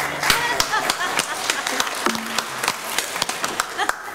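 Congregation applauding, with irregular claps and voices mixed in, just after a video's background music stops at the start.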